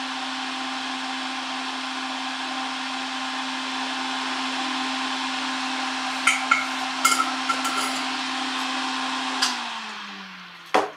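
Small fan of a benchtop solder fume extractor running steadily with a low hum and airy hiss, over a few light clicks and knocks of tools being set down about six to seven seconds in. Near the end a click switches it off and the fan winds down, its hum falling in pitch as the hiss fades.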